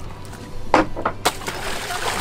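A shark-bitten snapper carcass thrown overboard hitting the sea: a sharp slap a little under a second in, then a longer splash of water.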